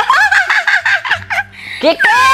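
A rapid run of high-pitched, gobble-like yelps, about seven a second, lasting about a second and a half.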